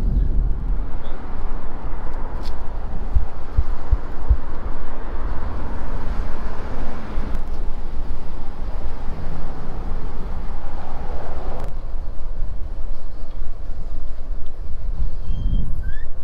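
Steady rushing noise of road traffic and wind, with a few low thumps about three to four seconds in and abrupt shifts in the noise twice later on.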